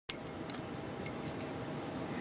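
Metal chopsticks and spoons clinking lightly against small ceramic dishes, about half a dozen clinks in the first second and a half, over a steady airplane-cabin hum.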